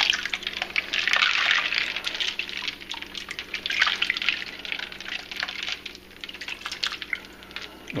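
A hand swishing cooked shrimp and ice cubes around in a sink of ice water: irregular sloshing and splashing with small clicks. It is busiest in the first couple of seconds and again around four seconds in, and settles toward the end. The shrimp are being chilled in the ice water right after cooking.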